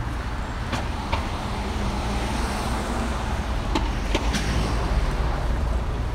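City street traffic: cars passing on the road with a steady low rumble, and a few brief clicks about a second in and around four seconds.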